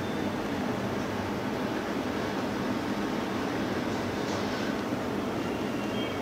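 Steady background room noise: an even low rumble with no distinct events.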